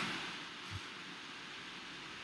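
Faint steady background hiss from the recording microphone, with one soft low thump about three quarters of a second in.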